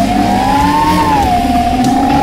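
Brushless motors and propellers of a 5-inch FPV racing quadcopter whining under throttle: a high-pitched whine that climbs a little, peaks about a second in, then eases slightly and holds steady.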